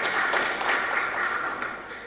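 Audience applauding, a dense patter of many hands clapping that dies away toward the end.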